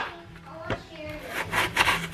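Kitchen knife slicing through an apple on a wooden cutting board: the blade cuts and scrapes through the fruit, with a sharp tap of the knife at the start and another about three quarters of a second in.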